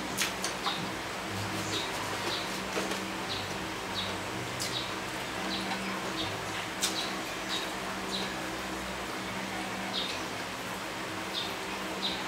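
Close-up eating sounds: chewing and lip-smacking on braised pig's head, heard as short, high clicks every half second to a second, over a low steady hum.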